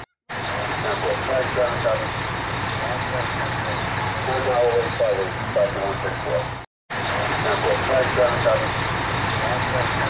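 An ambulance van's engine running steadily close by, with faint voices over it; the sound cuts out completely twice for a moment.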